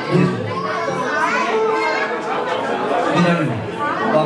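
A man's voice amplified through a handheld microphone and PA, over party music and the chatter of guests and children.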